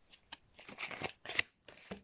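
Tarot cards being shuffled and slid against each other in the hands: a light, uneven run of card flicks and rustles, loudest about one and a half seconds in.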